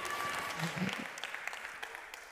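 Congregation applauding, with many scattered claps that fade away over the two seconds.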